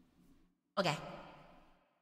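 A voice says "okay" about a second in, starting sharply and trailing off; before it there is only a faint low hum.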